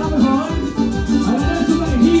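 Live Latin dance music from a band, with a steady beat and a bass line moving under pitched instrument lines.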